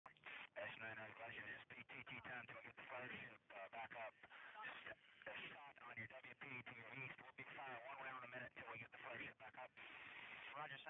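Radio chatter: men's voices over a narrow, tinny two-way radio link, exchanging military call-sign traffic.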